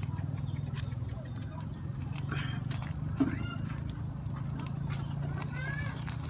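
Charcoal crackling with scattered small clicks under fish grilling on a wire rack, over a steady low hum. A few brief, faint voices or animal-like calls come and go.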